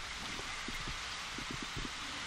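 Steady hiss of a telephone call-in line with a few faint crackles.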